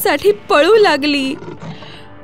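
A cartoon wolf's voiced roar, loud, starting about half a second in and dying away after about a second.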